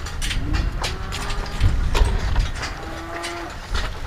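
Cattle lowing, two drawn-out calls, at a feed bunk, over scattered knocks and a steady low rumble.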